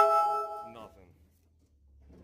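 A man's voice saying "nothing". At the very start there is a sharp click and a brief ringing tone that fades within half a second, then near silence.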